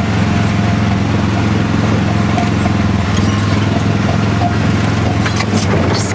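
Small engine of a drivable theme-park ride car running steadily as it is driven along, a constant low hum.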